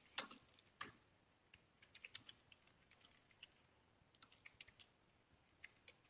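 Faint typing on a computer keyboard: irregular runs of keystroke clicks, with two stronger strikes in the first second.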